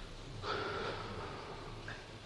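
Quiet mosque room sound with a faint, breathy sound from a person that starts about half a second in and lasts about a second, then a brief short sound near the end.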